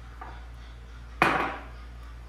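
A single sharp knock of a ceramic cup against a stone countertop about a second in, dying away quickly, while flour is poured from a bag into the cup.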